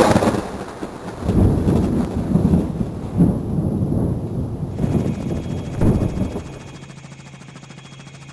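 Thunder rumbling and crackling in loud, irregular peals. About six and a half seconds in it gives way to a quieter, steady low hum.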